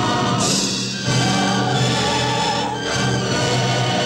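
A choir singing a waltz in long held chords, the chord changing about a second in and again near the end.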